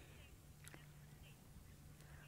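Near silence: a faint steady low hum, with one soft click a little under a second in.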